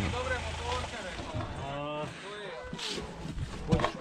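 People's voices talking, with a motor idling low underneath that fades out about a second in.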